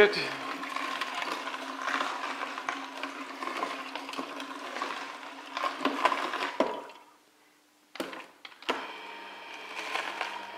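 Slow juicer's motor running with a steady hum while its auger crushes pieces of ginger, turmeric, apple and citrus, with crackling as the produce breaks up. About seven seconds in the sound drops away briefly, then after a click the motor hums again at a different pitch.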